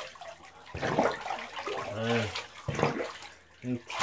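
Bathwater sloshing and splashing as a Great Dane puppy standing in the tub is washed by hand, in uneven bursts. A few short low voice sounds come about two seconds in and just before the end.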